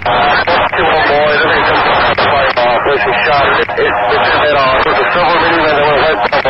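Police radio traffic: an officer's voice over the radio reporting a person shot, talking without a break at an even level.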